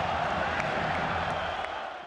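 Stadium crowd noise at a football match, a steady hubbub that fades out near the end.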